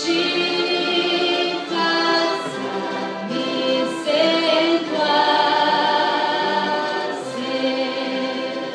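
Church orchestra and choir performing a slow hymn, with held chords changing every second or two.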